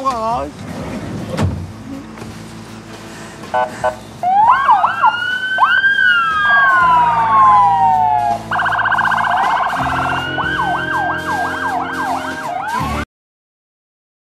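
Several police sirens sounding at once, overlapping wails that rise and fall with stretches of fast yelping warble. They start about four seconds in and cut off suddenly just before the end.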